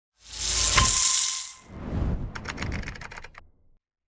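Intro sound effect for a title card: a loud whoosh with a sharp hit about a second in, then a quick run of rattling ticks that fades out before four seconds.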